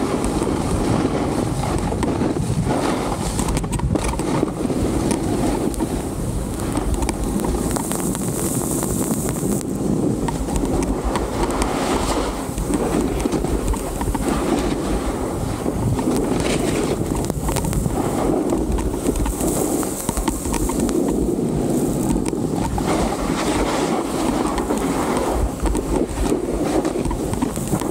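Steady rushing noise of a snowboard run: the board sliding and scraping over packed snow, with wind rushing on the helmet-mounted camera's microphone. It turns briefly hissier twice, about 8 and 20 seconds in.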